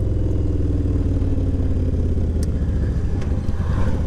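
Cruiser motorcycle engine running steadily while riding at road speed, heard from the rider's seat, its pitch easing down slightly over the first couple of seconds.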